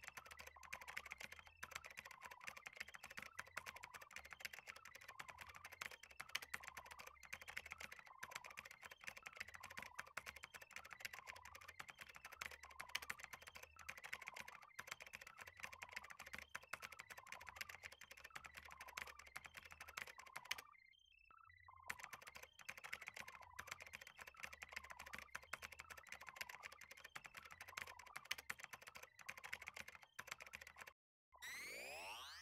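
Faint, rapid computer-keyboard typing clicks running continuously, with one pause of about a second roughly two-thirds of the way through.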